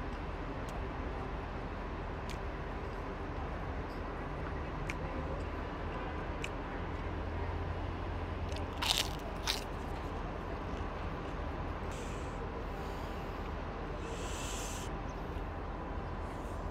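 Two sharp crunches about nine seconds in as a crisp krupuk (Indonesian cracker) is bitten, over a steady low hum of outdoor street background with a few light clicks.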